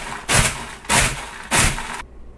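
Food processor pulsed in short bursts, about three a couple of seconds, chopping and rattling clumps of dehydrated TVP to break them up.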